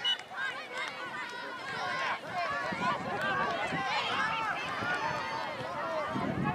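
Many overlapping, distant voices calling and shouting across an open soccer field, players and sideline spectators during play, none of the words clear.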